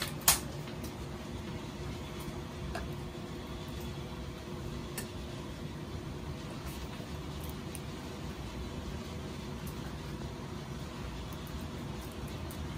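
Steady mechanical hum of a running fan, even throughout, with a faint steady tone in it. A single sharp click comes just after the start.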